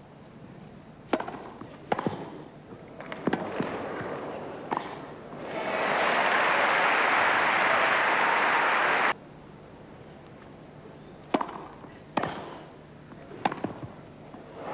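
Tennis rackets striking the ball in a rally, single sharp pops about a second apart. A few seconds in, crowd applause rises for about three seconds and cuts off suddenly, then another rally of racket hits comes near the end.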